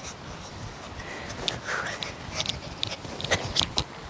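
Feet running in a sand arena and a person's breathing, heard as a few short, soft scuffs and breaths.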